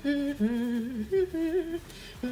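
A woman humming a tune to herself, a string of short held notes stepping up and down in pitch.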